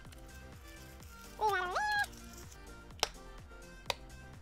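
Soft background music, with two sharp plastic clicks a little under a second apart near the end as the blue plastic shell of an L.O.L. Surprise ball is worked open.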